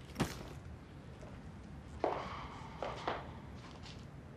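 A short soft knock as a leather handbag is set down on a chair, followed by two quieter rustling sounds about two and three seconds in.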